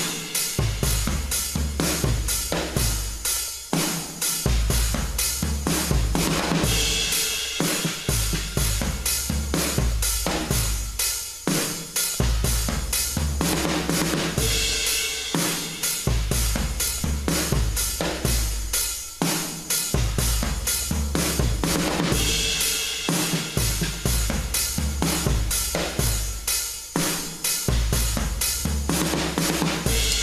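Programmed drum beat played back from the Addictive Drums virtual drum kit: kick, snare, hi-hat and cymbals in a steady looping rhythm, with the snare sent to a hall reverb.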